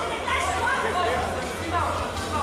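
Several voices talking and calling out over one another, with a low steady hum underneath.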